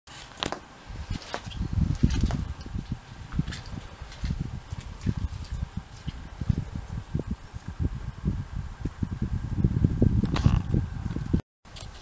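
Hand-held camera handling noise: irregular low thumps and bumps with a few sharp clicks and light rustling as the camera moves about.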